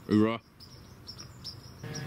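Crickets chirping faintly in short, high, repeated chirps, after a man's last spoken word. Near the end a steady hum comes in.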